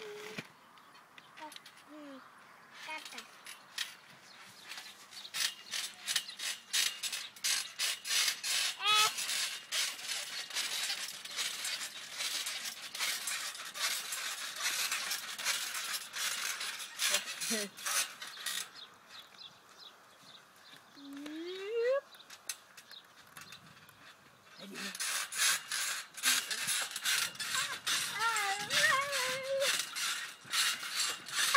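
Garden trampoline springs and mat clicking and creaking in rapid repeated strokes as people bounce, pausing for a few seconds past the middle and starting again near the end. A small child's high cries and a shout of "yay" come in over it.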